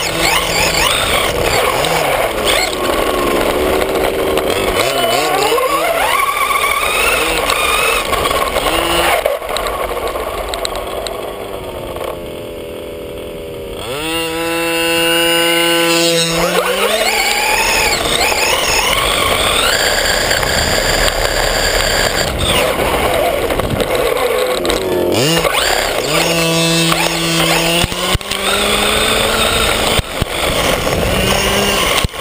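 Large-scale RC buggy's motor revving up and down as it drives hard over dirt, with rushing wind and dirt noise on the onboard microphone. About halfway through it eases off and holds a steady tone briefly before pulling away again.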